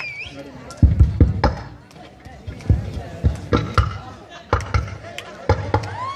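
A dozen or so irregular dull thuds and knocks from performers moving and striking about on a stage platform, with a few brief voices in between.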